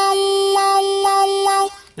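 Key of C blues harmonica holding one steady note with the hands cupped tightly around it, sealed off for a muffled tone. The tone brightens briefly three times, about half a second apart, then stops near the end.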